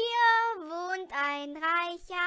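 A child's voice singing a St. Martin's door-to-door begging song, unaccompanied. It holds a note, glides down about half a second in, then sings shorter lower notes.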